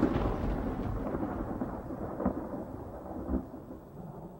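Thunder rumbling and slowly fading away, with two sharper cracks partway through, as a trailer sound effect.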